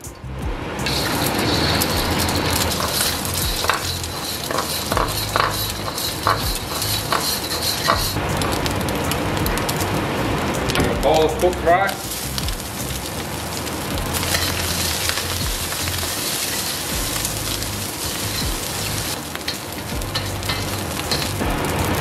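Egg and then cooked rice stir-fried in a wok with a little oil, sizzling steadily throughout. Clicks and scrapes of stirring come through, most clearly in the first half.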